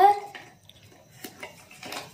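A spoon clinking lightly against an aluminium pan of corn flour and paper mache, a couple of short knocks in the second half.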